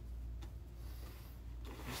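Quiet room tone with a steady low electrical hum, and one faint click about half a second in.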